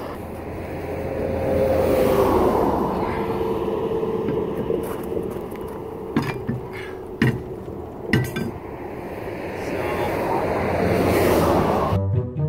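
Passing highway traffic, swelling and fading twice, with several sharp metallic clinks and knocks in the middle as a heavy motorhome wheel is tilted up onto the hub and its studs.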